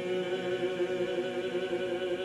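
Congregation singing a cappella in four-part harmony, holding a long, steady chord on the closing 'Amen' of a hymn.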